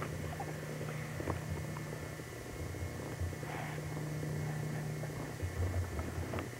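Low steady hum with soft, irregular low bumps and rubbing: handling noise of a camcorder held right up against a baby's face. A brief faint breathy sound about three and a half seconds in.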